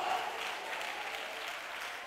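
Audience applauding steadily, a continuous even patter of clapping.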